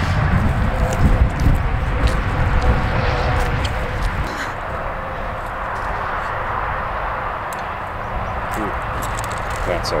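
One-row push corn planter being pushed along a row, with scattered light clicks and rattles from its wheels and seed mechanism. Under them runs a steady low rumble.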